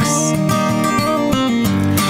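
Acoustic guitar strummed, its chords ringing out in a brief instrumental gap between sung lines.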